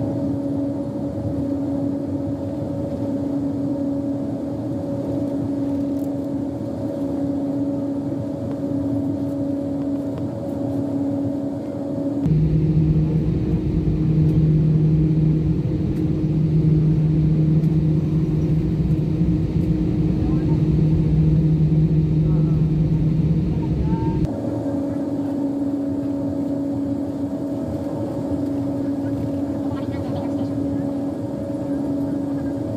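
Jet airliner's engines heard from inside the cabin while taxiing: a steady hum holding a constant tone. About twelve seconds in it switches abruptly to a louder, deeper rumble, and about twelve seconds later it switches back just as suddenly.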